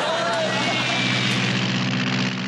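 A steady low droning hum with an even buzz, like a running engine. A short gliding voice-like sound comes near the start.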